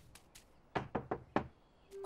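A quick run of about five light knocks or taps within about a second, after a near-silent start.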